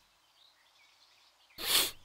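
Near silence, then about one and a half seconds in a single short, sharp breath from a person, a huff or quick exhale.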